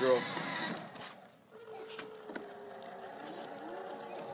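Electric ride-on toy car driving over stone pavers, its small motor giving a steady whine that sets in about a second and a half in.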